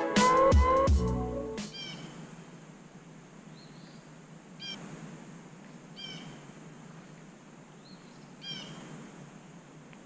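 Electronic music ending within the first two seconds, then a faint steady hiss broken by short high-pitched animal calls, about five of them, each a brief bending cry.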